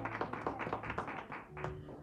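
Congregation clapping, a dense run of irregular claps, with a low held tone under the first second.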